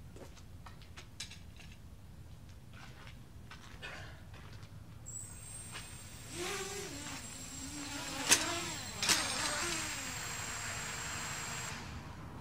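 Nighthawk Pro quadcopter drone's motors spinning up about five seconds in: a high whine and propeller whir whose pitch wavers. Two sharp knocks come less than a second apart in the middle, then the motors run on steadily and cut off near the end.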